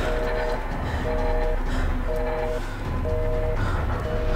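Telephone busy signal: a two-tone beep, half a second on and half a second off, repeating about once a second, meaning the dialled line is engaged and the call does not connect. A low droning music bed runs underneath.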